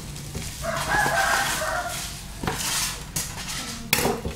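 Plastic bubble-wrap packaging rustling as a styrofoam box is handled, with a click near the end. A held crowing call lasting about a second sounds behind it, starting just under a second in.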